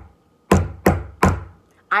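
Three sharp percussive knocks about a third of a second apart: the closing ti-ti-ta of a five-beat ta-ta-ti-ti-ta rhythm played as a toucan puppet's beak rhythm for children to clap back.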